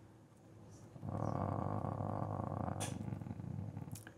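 A man's low, creaky, drawn-out hesitation sound, like a long 'eeh', starting about a second in and lasting nearly three seconds.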